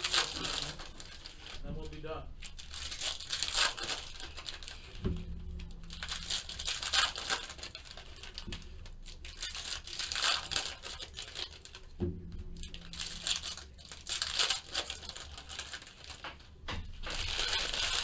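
Shiny foil wrapper of a Topps Tribute baseball card pack crinkling and tearing as it is worked open by hand, with two sharp knocks along the way.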